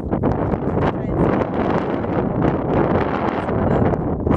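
Loud wind buffeting the microphone.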